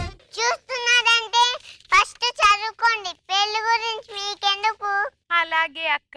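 A young girl singing alone, without accompaniment, in short high-pitched phrases with brief gaps between them.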